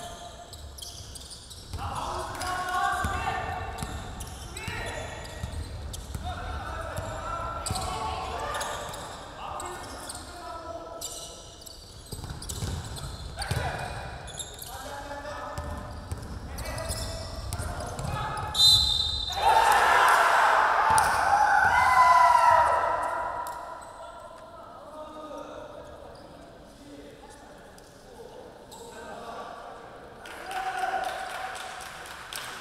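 Basketball being dribbled and bouncing on a gym floor in a large hall, with players calling out to each other. A short high whistle sounds about two-thirds of the way through and is followed by several seconds of loud shouting, the loudest part.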